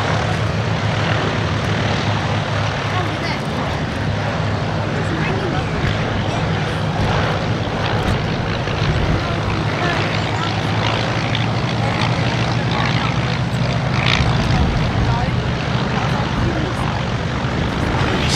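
Douglas C-47/DC-3 Dakotas taxiing past on grass, their twin radial engines and propellers running with a steady low drone.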